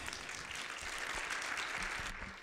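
Congregation applauding: many hands clapping in a dense, even patter that thins out near the end.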